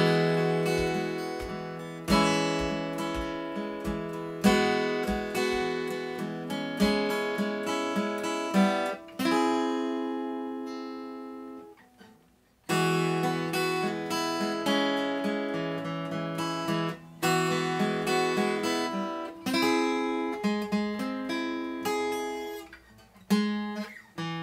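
Steel-string acoustic guitar played solo, chords struck and picked every second or two. About nine seconds in one chord is left to ring and die away, there is a brief silence near twelve seconds, and the playing picks up again.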